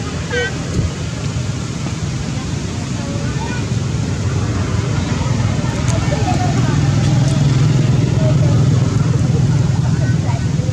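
Outdoor background noise with a steady low hum, like a motor, that grows louder in the second half, and a short run of high chirps about half a second in.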